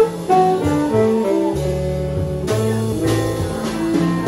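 Live jazz combo playing: a plucked upright bass line under keyboard and drums with occasional cymbal strikes, and saxophone in the mix.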